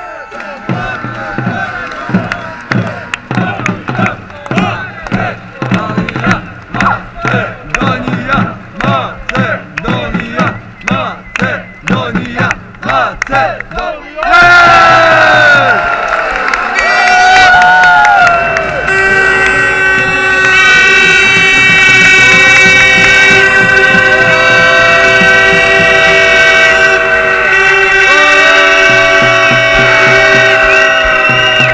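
Crowd of fans chanting "Makedonija" in a loud, steady rhythm of about two shouts a second. About halfway the chant gives way abruptly to louder music with long held notes.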